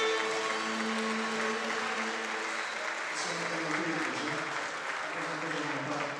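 Audience applauding as the last held notes of a Cretan lyra and lute ensemble die away in the first couple of seconds; voices talk over the clapping after that.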